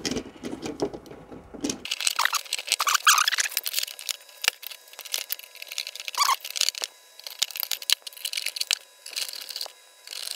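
Many small irregular clicks, taps and scrapes of a screwdriver and hands working on a 3D-printed plastic lamp housing as a bolt is fastened from the underside, with a few brief squeaks. The sound turns thin from about two seconds in.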